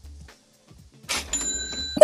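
A cash-register 'ka-ching' sound effect about a second in: a short rattle followed by a steady ringing bell tone.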